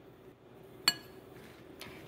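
A metal spoon clinks once, sharply, against a glass mixing bowl about a second in, while stirring chopped vegetables.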